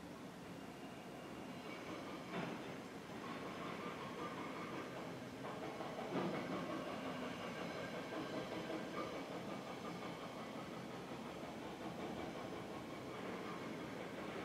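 Faint, steady mechanical background noise with a few faint steady tones running through it and a couple of soft knocks.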